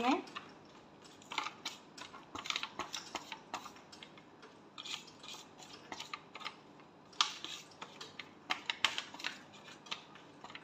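Silicone spatula stirring and scraping a spice-and-sauce paste against a disposable aluminium foil tray: irregular short clicks and scrapes, several a second at the busiest.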